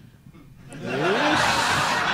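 Audience at a comedy club bursting into laughter with shouts, swelling up from a quiet moment about a second in.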